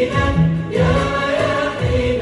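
Vocal music: several voices singing together in long held notes, like a choir.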